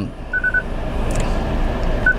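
Three short, quick electronic beeps from the Mitsubishi Outlander's dashboard touchscreen head unit, the touch-feedback tones as the screen is pressed, over a steady low rumble in the car's cabin.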